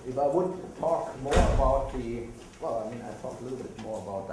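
A person talking, with one sudden loud thump about a second and a half in.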